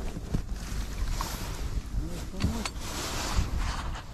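Wind buffeting the microphone, with clothing rustle and scattered sharp knocks as a freshly caught perch is landed and handled on the ice.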